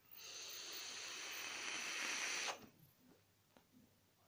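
A long, slow draw on an e-cigarette: a steady airy hiss through the device that grows slightly louder for about two and a half seconds, then stops abruptly.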